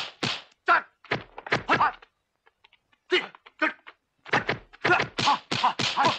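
Kung fu film fight sound effects: a rapid run of sharp punch-and-block whacks, several a second. They stop for about a second two seconds in, then pick up again and keep coming.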